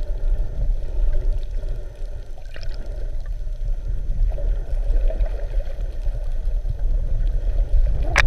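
Muffled underwater noise through a GoPro's sealed housing: a steady low rumble of water moving around the camera, with a couple of faint ticks about two and a half seconds in.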